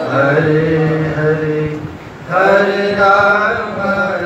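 Devotional chanting: a voice singing long held melodic notes. There is a brief break about halfway through before the next phrase starts.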